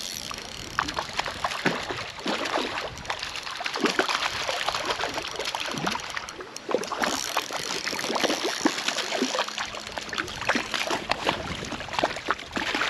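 A hooked trout splashing and thrashing at the surface of shallow creek water, many small irregular splashes over the running stream.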